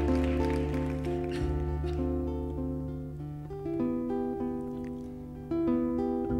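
Acoustic guitar playing a song's introduction: plucked notes ringing over a low held bass note, with the chord changing about a second and a half in and again near the end.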